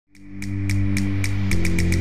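News-programme intro music that fades in quickly: a sustained low synth chord under a ticking pulse, the ticks coming faster and the chord shifting about a second and a half in.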